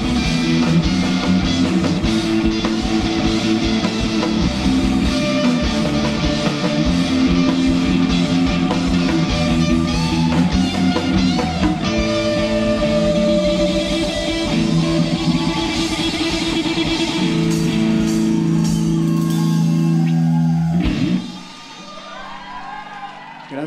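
Live rock band playing: electric guitars, bass guitar and drum kit at full volume, with sustained chords. The song stops abruptly about a second before the end.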